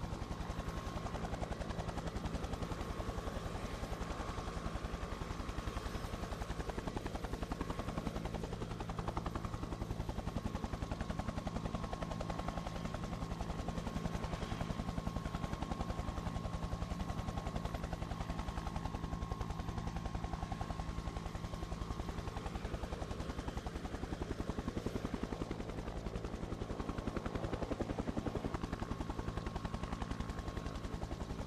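Helicopter in flight: rotor blades beating fast and evenly, with a steady high whine. It is a helicopter sound track laid on by the broadcaster over the aerial pictures.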